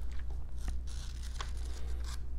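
Thin Bible pages being turned: a soft paper rustle with two sharp crackles, over a low steady hum.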